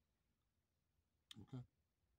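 Near silence, broken about a second and a half in by a sharp click and a short low sound right after it.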